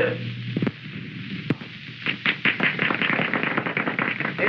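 A band number cuts off at the start, leaving the hiss of an old film soundtrack with two sharp pops. From about halfway through comes a dense run of quick, irregular sharp clicks.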